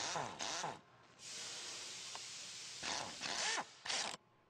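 A power nut driver with a socket running nuts down onto the bolts of Flexco bolt solid plate belt fasteners, in short runs whose motor pitch bends as each nut takes up load. A steady hiss fills the gap between the first two runs.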